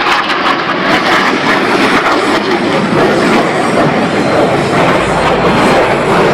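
Blue Angels F/A-18 jets making a low pass, their engines loud and steady throughout.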